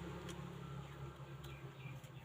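Faint low hum of a plugged-in 3D pen running, easing off about one and a half seconds in, with a few light clicks.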